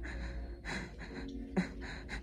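Breathless, gasping laughter in short breathy bursts, with one brief louder sound about three quarters of the way through.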